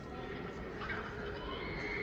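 Soundtrack of an old black-and-white film playing through cinema speakers: a short high-pitched cry about a second in, then a held high note near the end over a steady background.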